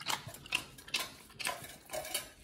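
Pit bulls licking at a stainless steel feeding bowl: wet tongue smacks and irregular small clicks and clinks of tongue and teeth against the metal, several a second.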